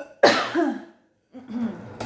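A woman coughing: one sharp, loud cough about a quarter second in, then a softer cough or throat-clearing near the end.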